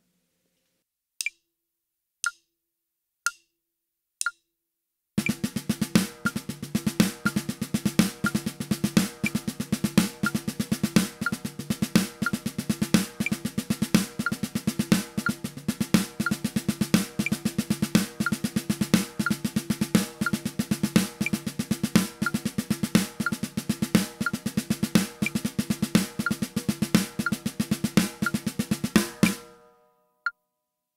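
Four clicks, one second apart, count in at quarter note = 60. Then a snare drum played with sticks runs the seven-stroke roll rudiment: rapid double strokes resolving into a louder accented note on each beat, repeated steadily with the click keeping time, until it stops just before the end.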